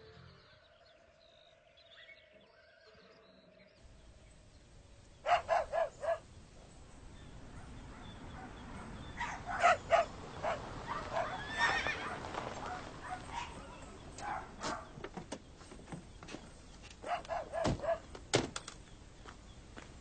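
Horses whinnying several times: a run of calls about five seconds in, more around ten seconds and again near the end, over faint outdoor background. The opening few seconds are near silence with a faint hum.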